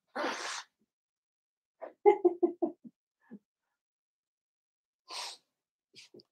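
A man blowing his nose into a tissue: a short, breathy blast at the start, a quick string of short voiced bursts about two seconds in, and another short blow near the end.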